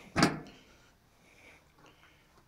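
A single sharp metal clunk from the door of a Masterbuilt portable propane smoker being unlatched and swung open, dying away within about half a second.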